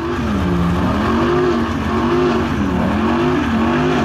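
Dodge Ram SRT-10's 8.4-litre Viper V10 held at high revs during a burnout, rear tyres spinning. The engine note swells and dips repeatedly as the throttle is worked.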